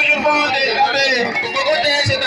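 Loud music over a sound system, with a man's voice on a microphone running over it.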